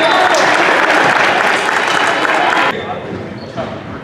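Voices shouting and cheering in a large, echoing gym just after a volleyball point, cut off abruptly about three seconds in, followed by quieter gym noise.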